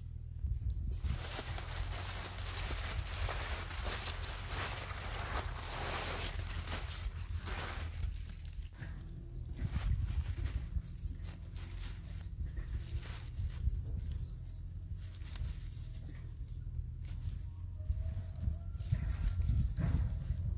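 Rustling and crinkling of a woven plastic sack and bunches of leafy greens being handled, dense for the first several seconds and then lighter, scattered crackles. A steady low rumble runs underneath.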